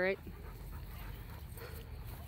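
A dog breathing and panting faintly close by, over a low steady rumble.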